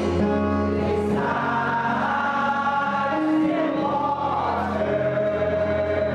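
A small choir of mostly women singing a gospel song together through microphones, holding long notes that step from one pitch to the next.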